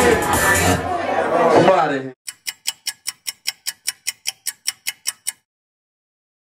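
Live hip hop performance, rapped vocals over a backing track through the club PA, cut off abruptly about two seconds in. Then a run of about sixteen sharp ticks, five a second, for about three seconds: a ticking sound effect over the outro title card, stopping suddenly.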